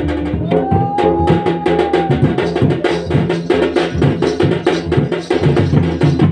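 Double-headed barrel drum (dhol) played by hand and stick in a rapid, steady dance rhythm. A voice holds one long sung note in the first two seconds over the drumming.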